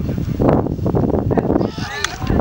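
Wind rumbling on the microphone, with a short, high, wavering shout near the end.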